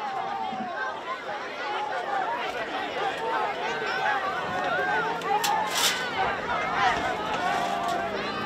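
Crowd chatter: many people talking at once, voices overlapping without any one standing out.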